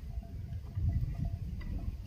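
Wind rumbling on the microphone, with a few faint short high peeps scattered through it.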